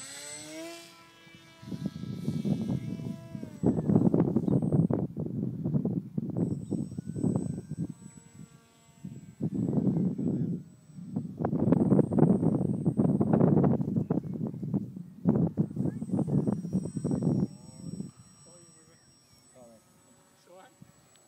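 Electric motor and propeller of a small RC flying wing winding up to a rising whine for the first few seconds as it is launched. Then loud, irregular noise comes in long surges through most of the rest, with a faint high whine from the wing in flight.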